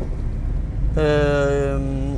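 Low, steady engine and road rumble inside a moving car's cabin; about halfway through, a man's voice holds a drawn-out hesitation sound, 'ehh', for just under a second.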